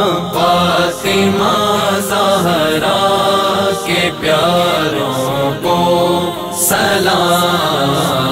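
Male voices singing a devotional Urdu salam in a slow, drawn-out melodic line without recognisable words, over a steady, low, hummed drone.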